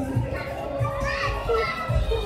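Children playing: several young voices calling and chattering over one another.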